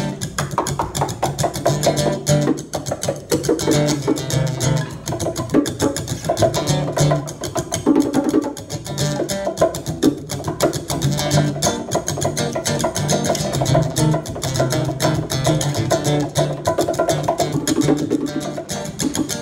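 Live acoustic guitar strummed in a steady rhythm with bongo drums played alongside, an instrumental passage of the song.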